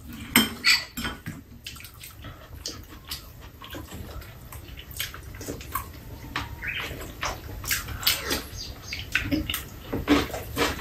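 Metal chopsticks and spoons clicking and scraping against bowls and a metal tray as two people eat, a scatter of light, irregular clinks.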